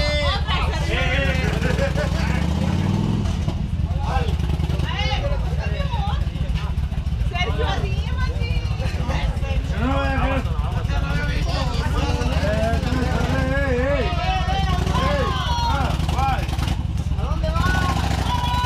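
Several people talking over one another above a steady low rumble of a motorcycle engine idling close by.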